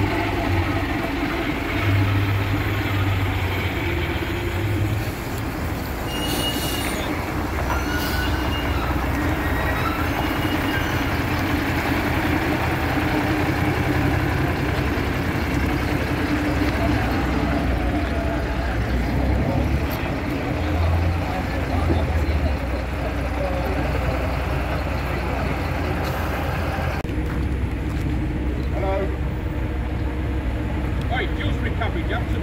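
Diesel engine of a double-decker bus running and pulling away at low speed, a steady low rumble. There is a brief hiss about six seconds in. Near the end the sound changes abruptly to a quieter, thinner street background.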